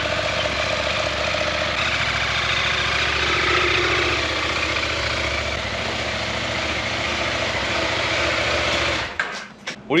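Husqvarna Norden 901 adventure motorcycle's 889 cc parallel-twin engine running steadily at low speed while the bike is ridden slowly. The sound stops abruptly about nine seconds in.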